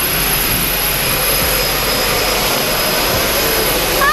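Single-engine propeller plane running close by on the airstrip: a loud, steady rush of engine and propeller noise with a thin, high, steady whine over it.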